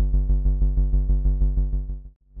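Soloed synth bass from a Befaco Kickall module in VCV Rack: one deep pitched note retriggered about seven times a second, each hit starting sharply and then fading, with no sidechain ducking. It falls away at the very end.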